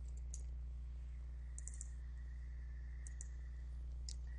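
Faint clicks of a computer keyboard and mouse: a single click, then a quick run of three, then two more, over a steady low electrical hum.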